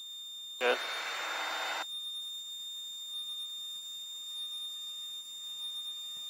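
Light aircraft's intercom audio: a rush of cabin noise through the open microphone that cuts off abruptly a little under two seconds in, leaving a steady thin electronic whine of high tones in the feed.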